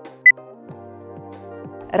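A single short, high beep from an interval-training timer about a quarter of a second in, signalling the start of the exercise interval, over background music with a light steady beat.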